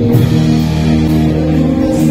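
Live rock band playing a song, with electric guitars, bass guitar and drum kit under held notes.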